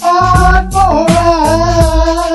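R&B/hip-hop song: a single sung note held through, dipping a little in pitch about a second in, over a beat of regular drum and bass hits.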